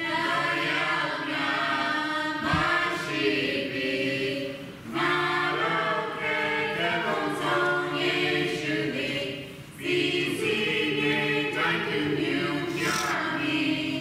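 A small family group of voices, women and girls with a man, singing a hymn together unaccompanied, in long phrases with short breaks for breath about five and ten seconds in.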